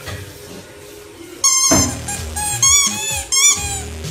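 Yellow spiky rubber squeaky ball squeaking as a puppy bites it: one squeak about a second and a half in, then several more close together in the second half.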